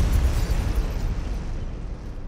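Explosion sound effect: a deep boom that starts just before and fades slowly away, with crackling noise over a low rumble.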